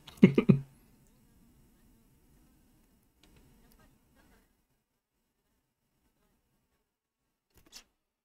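Near silence after a man's words trail off in the first moment: a faint low hum for a few seconds, then nothing, with one brief rustle near the end.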